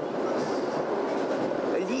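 Steady running noise of a train carriage heard from inside the car, a continuous rumble and rush with no clear rhythm. A man's voice starts again right at the end.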